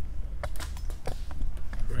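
A run of light, irregular taps and knocks with a low rumble underneath: footsteps and the handling noise of a hand-held camera being moved.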